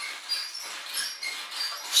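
Coil springs and metal frame of a spring-mounted rocking horse squeaking as a child bounces on it, a few short high squeaks.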